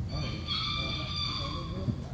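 A single steady high-pitched tone with several overtones, held for about a second and a half, over a constant low background rumble.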